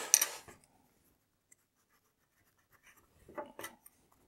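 Pencil writing on a paper notebook: a short scratchy stroke at the start, a quiet gap, then a few more pencil strokes near the end.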